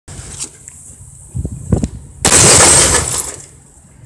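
Cinder block smashing a CRT television: two short knocks, then about two seconds in a loud burst of shattering glass as the picture tube implodes, dying away within about a second.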